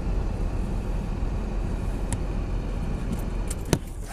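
Steady low road rumble of a car being driven, heard from inside the car, with one sharp click near the end.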